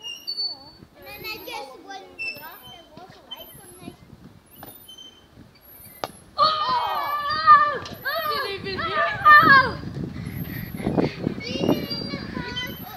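Children's voices shouting and calling out during play, fairly quiet at first and much louder from about halfway through. A single sharp knock sounds just before the loud shouting starts.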